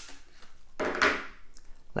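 Leica SL3 battery being released and pulled out of the camera's grip: a sharp click of the release, a short scraping slide about a second in, and another click near the end.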